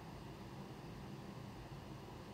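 Faint, steady background hiss of room tone and recording noise, with no distinct sounds.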